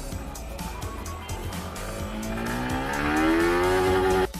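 Yamaha R15M's 155 cc single-cylinder engine revving up in first gear under acceleration. Its pitch climbs steadily and it gets louder toward the top of the gear.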